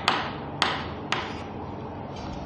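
Chalk on a chalkboard while writing: three sharp taps in the first second or so, each as the chalk strikes the board, then quieter scraping.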